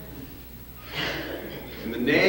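A short, breathy intake of breath about a second in, over a faint room murmur.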